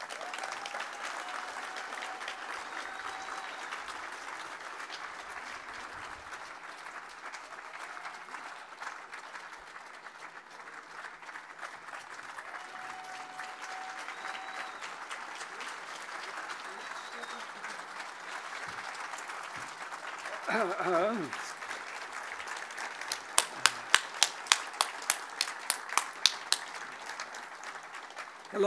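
Audience applauding steadily. Near the end there is a brief voice, then a run of about a dozen loud, sharp taps, roughly three a second.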